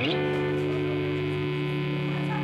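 Electric guitars through distorted amps holding one sustained chord that rings on steadily, right after a quick rising slide at the start.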